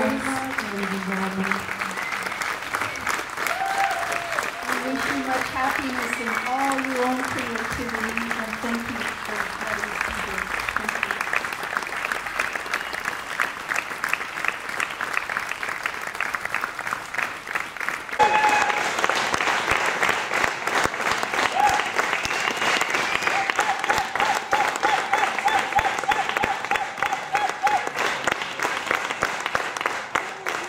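Audience applauding, with voices and cheers over the clapping. About eighteen seconds in the applause grows louder, and a long, wavering cheer rises above it.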